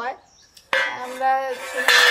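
Bangles clinking on a wrist as the arm lifts food to the mouth, with two sharper clinks: one a little under a second in and one near the end, over a woman's talking.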